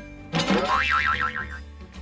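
Cartoon boing sound effect about a third of a second in: a sweep up in pitch that then wobbles up and down several times and fades within about a second. Background music plays under it.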